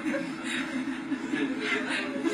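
People chuckling and laughing.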